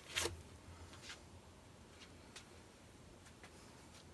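A spinner turning a freshly poured acrylic painting in its tray: a sharp tap about a quarter second in, then a faint low hum of the spinning with a few faint ticks roughly a second apart.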